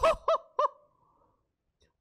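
A man's high-pitched excited shout of "Yo!" ending just after the start, followed by two short cries at the same pitch, then quiet.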